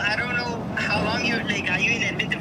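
Speech: a man's voice talking, heard thinly as if over a phone speaker on a video call, with steady city traffic noise underneath.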